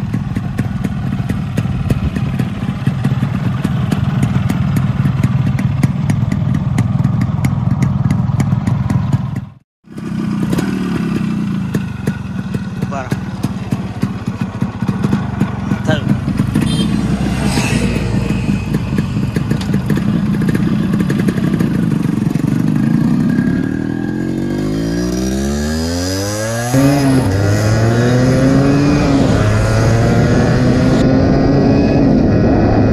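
Yamaha RX two-stroke single-cylinder motorcycle engine running steadily at idle. Later, with the rider aboard, the engine pulls away: its revs climb, drop at a gear change about three-quarters of the way in, then climb again.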